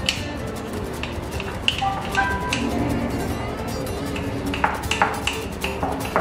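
A metal spoon clinking against the inside of a ceramic mug while stirring runny cake batter: scattered sharp clinks with a short ring, several in quick succession near the end, over quiet background music.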